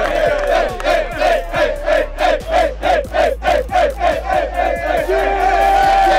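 A group of young men chanting and yelling together in a quick beat, about three shouts a second, over hand clapping, ending in a long held yell.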